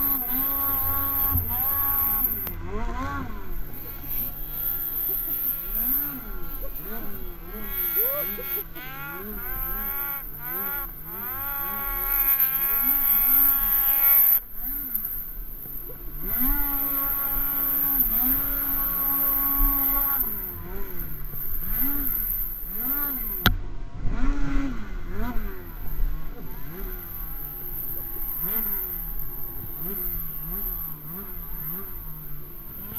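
Snowmobile engine revving up and down again and again under throttle, its pitch rising and falling every second or so. It cuts off abruptly about halfway through, then picks up and revs again. A single sharp knock sounds a little past the middle.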